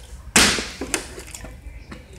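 A partly filled plastic water bottle hitting a tile floor: one loud, sharp smack about a third of a second in, then a small faint knock about a second in.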